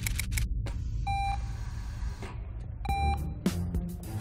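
Hospital patient monitor beeping twice, short pitched beeps about two seconds apart, over a low steady hum; a quick run of clicks comes just at the start.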